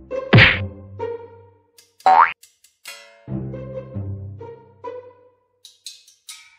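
Cartoon sound effects over light background music: a thwack about half a second in, then a quick rising boing about two seconds in, with plucked musical notes after.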